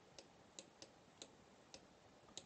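Near silence broken by about six faint, irregularly spaced clicks from a computer input device while a letter is hand-drawn on screen.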